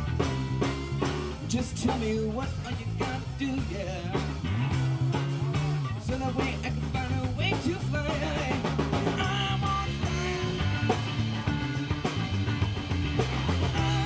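A live rock band playing, with electric guitars over a steady drum beat.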